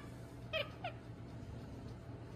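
Two short, squeaky calls from a small animal, close together about half a second in.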